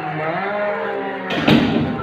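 A long, low drawn-out vocal sound from a person, not words, sliding slowly down in pitch. A louder short burst of rustling noise follows in the last part.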